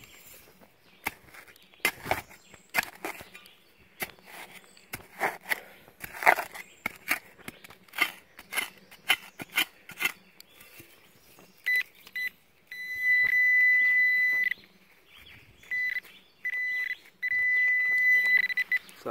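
Dirt being dug and scraped in a small hole, a run of short sharp scrapes and knocks, then a handheld metal-detecting pinpointer giving its high steady alert tone in several stretches during the second half, the longest nearly two seconds, as it picks up metal in the hole.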